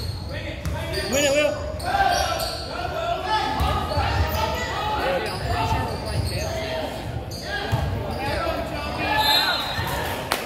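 Basketball dribbled on a hardwood gym floor, with indistinct calls from players and spectators around it.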